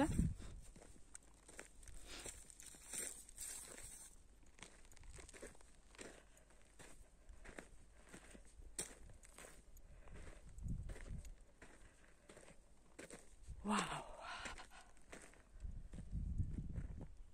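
Footsteps on dry, crusted clay and loose grit: a steady run of small scuffs and crunches as someone walks, faint overall. A short voice sound breaks in near the end.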